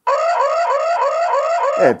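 Built-in alarm siren of an S-link SL-IND04 Wi-Fi security camera sounding at full volume: an electronic whoop that rises in pitch about four times a second, cut off near the end.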